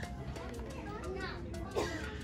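Shop background of faint, distant voices, children among them, with a short louder voice sound near the end.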